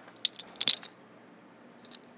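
A quick run of small, sharp clicks and crackles, the loudest about three-quarters of a second in, from hands handling paper and pen on a desk.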